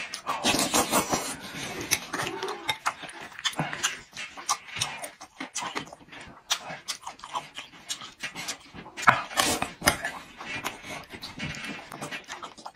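Close-miked eating: a man chewing and slurping spoonfuls of rice, frozen tofu and dried chillies in broth, with many wet mouth clicks. The loudest bursts come near the start and about nine seconds in.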